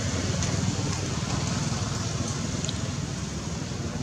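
Steady outdoor background noise with a strong low rumble and an even hiss above it.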